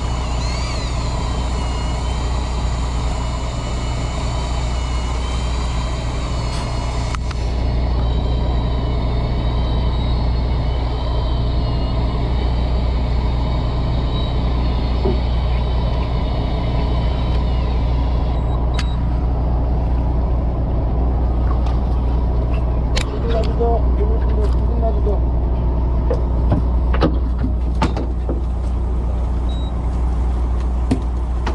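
A boat's engine runs steadily with a low hum. Over it a higher, wavering whine runs until about 18 seconds in and then stops. Several sharp knocks and clatters follow in the last ten seconds.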